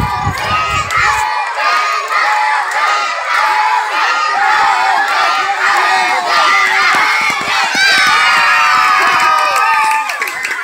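A crowd of children shouting and cheering on runners in a footrace, many high voices overlapping without a break, a little louder near the end.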